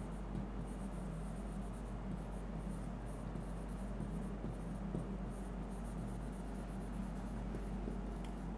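Marker pen writing on a whiteboard: a string of short, irregular strokes of the tip against the board over a steady low hum.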